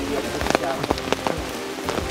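Steady rain, with sharp drops ticking close to the microphone several times a second.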